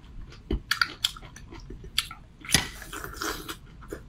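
Close-up eating sounds of raw geoduck siphon being bitten and chewed: a string of short, wet mouth clicks, with a longer noisy wet sound about two and a half seconds in.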